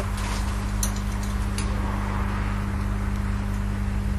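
A steady low hum, with two light clicks about a second and a second and a half in.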